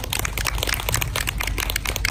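Audience applause: many separate hand claps in a dense, irregular patter.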